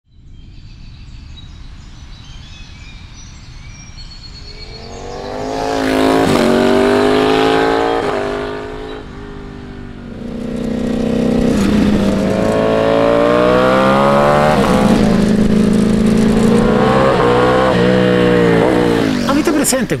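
Ducati Panigale V4 SP2's 1,103 cc Desmosedici Stradale V4 accelerating hard through the gears, its pitch climbing and dropping back at each upshift. It comes in about five seconds in, eases off around nine seconds, then pulls again through a run of upshifts. Faint birdsong is heard before the engine comes in.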